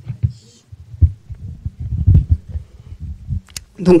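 Microphone handling noise: irregular dull low thumps and rumbles as the microphone is handled or knocked. A woman starts speaking near the end.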